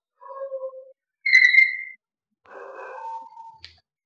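Chalk squeaking against a chalkboard as a large circle is drawn freehand. There are three squeals: a short lower one, then the loudest and highest just after a second in, then a rougher, scratchier one in the second half.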